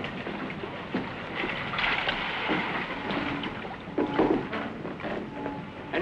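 Water splashing and lapping around a small wooden rowing boat as it is brought in alongside, with a few separate splashes or knocks about every second and a half.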